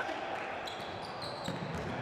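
A basketball being dribbled on a hardwood gym court, faint against the steady background noise of the gym.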